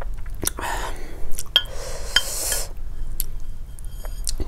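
Wooden chopsticks clicking and tapping against dishes as noodles are picked up, about five sharp clicks with a little ring to some, between two stretches of soft rustling noise.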